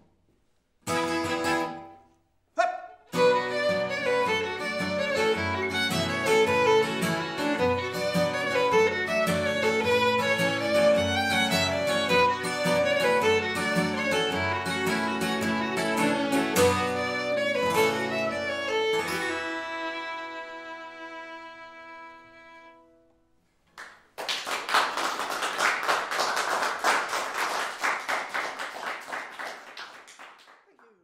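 Fiddle and acoustic guitar play a folk tune's instrumental ending: two short stop-start chords, then a lively run. The last chord rings out and fades, and after a moment's silence an audience applauds.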